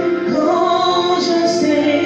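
A woman singing a worship song into a microphone over sustained musical backing that holds steady tones beneath her voice.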